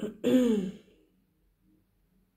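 A woman clearing her throat once, a short rough voiced sound that falls in pitch, over within the first second.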